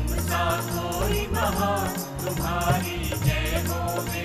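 Hindi devotional song to Hanuman (a bhajan): a sung melody over music with a steady repeating beat.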